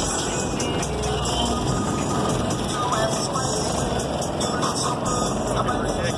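Music with heavy bass played loud through a pickup truck's car-audio subwoofer system, running steadily.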